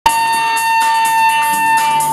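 Electric guitar feedback through the amplifier: one steady, high-pitched tone held throughout, with a noisy wash above it, from a live hardcore punk band on stage.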